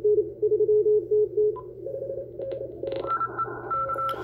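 Morse code (CW) received on an Icom IC-705 transceiver: a station keying dits and dahs on a low tone, heard through a narrow 250 Hz filter. About three seconds in, the filter is opened out to 1.3 kHz and more of the busy band comes through, including a second, higher-pitched CW signal and more hiss.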